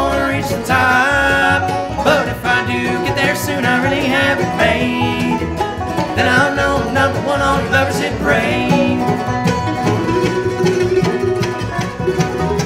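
Live bluegrass band playing: strummed acoustic guitar, upright bass and fiddle, with harmony singing.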